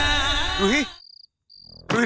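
A background song with a singing voice cuts off about a second in. After a brief silence, crickets start chirping in short high trains of pulses over a low hum.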